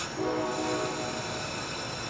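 Amtrak P42 diesel locomotive's air horn sounding one short chord-like blast, about a second long, as the train stands at the station. A ringing high tail from a burst of sound just before the blast fades under it.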